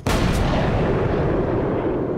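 Two handgun shots fired at close range, about a third of a second apart, each a sharp crack, followed by a long echoing tail that fades slowly.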